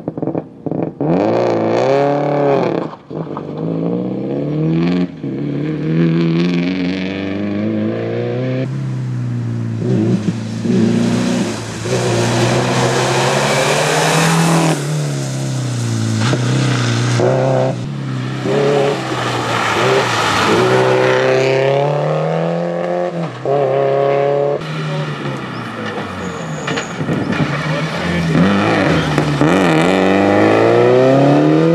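Subaru Impreza rally car's turbocharged flat-four engine driven hard on a stage, its pitch climbing and dropping over and over as the driver accelerates, shifts and lifts for corners, over several passes.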